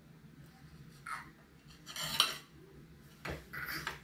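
Cutlery clinking and scraping against dishes at a meal table: a few short, separate clatters, the sharpest about two seconds in.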